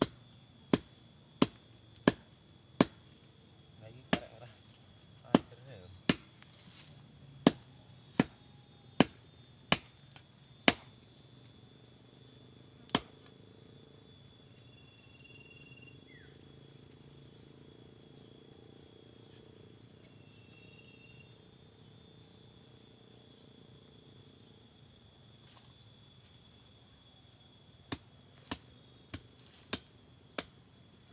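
Sharp strikes of a hand tool into the soil and roots at the base of a tree being dug out, about one every three-quarters of a second for the first ten seconds, one more a little later, then four lighter strikes near the end. Insects drone steadily and high-pitched underneath.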